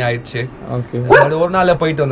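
A man talking in a steady, continuous voice.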